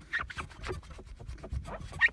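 Cotton cloth wiping glass cleaner across a car windscreen: a run of short, uneven rubbing strokes on the glass.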